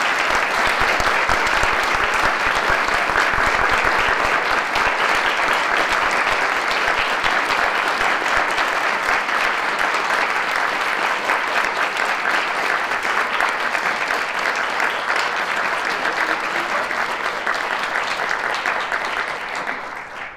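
Audience applauding, a dense, steady clapping that holds for nearly twenty seconds, eases slightly, then stops abruptly at the very end.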